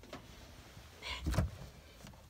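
A small motorhome fridge door being pulled open: a brief scrape and a dull thump just over a second in.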